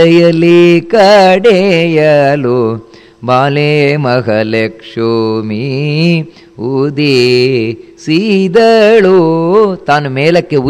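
A man chanting Sanskrit verses in a slow melodic recitation: long held notes with wavering pitch, in phrases broken by short pauses.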